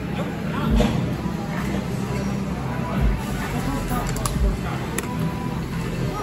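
Bar room background: other people's chatter and background music, with a sharp click about five seconds in.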